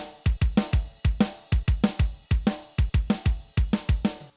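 Recorded kick drum and snare drum tracks played back together in a steady beat of about four hits a second, raw and unprocessed, with no EQ, filters, compression or effects.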